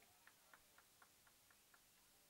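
Near silence with a faint, regular ticking, about four ticks a second, that fades and stops shortly before the end.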